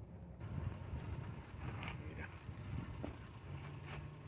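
Footsteps on gravelly desert ground, a few irregular steps, over a steady low rumble.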